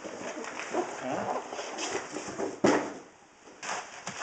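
Plastic bag of wet-pack Arag-Alive aragonite sand being handled, crinkling and rustling, with one sharp crackle about two and a half seconds in.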